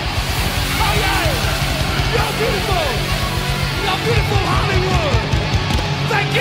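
Loud rock music with a driving beat and electric guitar, in a passage without singing.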